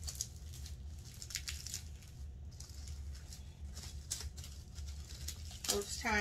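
Clear plastic protective wrap crinkling and rustling in irregular crackles as hands pull it off a leather handbag's handles, over a faint steady low hum.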